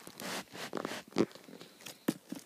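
Thin plastic bag rustling and crinkling as a cat shifts inside it and paws at it: a longer rustle at the start, then uneven crackles, the loudest a little after the middle.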